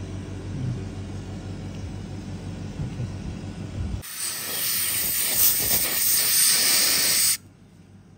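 A low steady hum, then about halfway in a dental air syringe blows a loud, even hiss of air into the mouth for about three seconds and cuts off suddenly.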